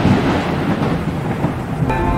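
Thunder rumbling and slowly fading over steady rain: a storm sound effect opening a slowed, reverbed song remix. Held musical notes come in near the end.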